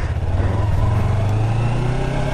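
2019 Yamaha YZF-R3's parallel-twin engine running at low, steady revs as the bike pulls slowly away from the curb.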